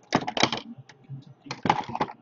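Quick clicking and rustling handling sounds on a desk, close to the microphone, in two bursts: one near the start and one about a second and a half in, with faint ticks between.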